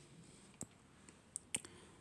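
A few faint computer mouse clicks, the loudest about one and a half seconds in, over quiet room tone.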